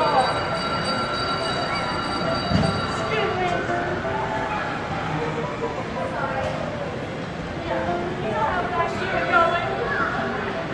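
Indistinct children's voices and chatter, over a steady high whine that fades after about three seconds.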